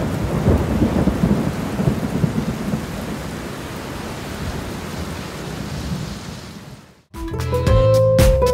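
Thunder rumbling over a steady hiss of rain, heaviest in the first couple of seconds and fading out. It cuts off about seven seconds in, and upbeat dance music with a steady beat starts.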